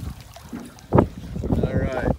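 Water splashing as a hooked striped bass thrashes at the surface beside a boat, with one sudden loud splash about a second in, then a voice near the end.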